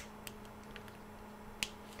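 Flush cutters snipping the excess tails off nylon zip ties: a sharp snap right at the start and another about a second and a half in, with a few faint ticks between.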